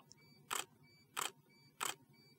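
Nikon D800E DSLR shutter firing three quick frames, about two-thirds of a second apart. The flash pack is set to its minimum of 6 watt-seconds, so it recycles fast enough to keep up with the shots.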